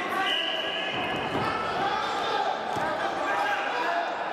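Voices calling out in a large sports hall, echoing, with a few dull thuds around the middle.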